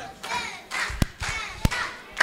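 Faint voices in a hall, with two sharp single hand claps, about a second in and again just over half a second later.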